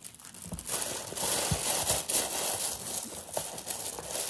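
Tissue paper rustling and crinkling as it is folded and pushed down into a cardboard box, with a couple of soft knocks early on.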